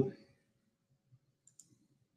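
Near silence after a spoken word trails off, with one faint computer mouse click about one and a half seconds in.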